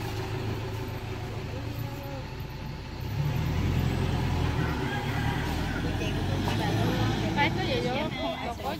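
Toyota Hilux D-4D diesel pickup engine running at idle, then louder from about three seconds in as the truck pulls away and drives off.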